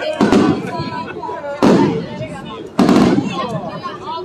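Aerial firework shells bursting overhead: three loud booms, just after the start, about a second and a half in, and near three seconds, each fading off in a rolling echo.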